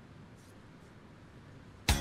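Quiet studio room tone with no distinct sound. Just before the end, music cuts in abruptly and loudly as a commercial starts.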